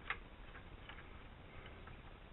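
A few faint, irregular small clicks, a slightly sharper one just at the start, over a low steady room hum.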